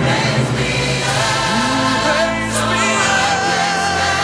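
Music: a slow, gospel-style song with a choir singing long held notes over instrumental accompaniment.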